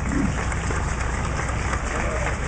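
Steady low rumble with an even hiss over it: the background noise of an outdoor urban plaza, with an engine-like, idling character. A brief murmur of a voice comes just after the start.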